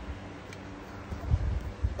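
Low bumps and rustling from a handheld phone camera being moved about, with a faint steady hum underneath.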